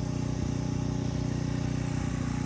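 A steady low engine drone with several even, unchanging tones, running under a pause in speech.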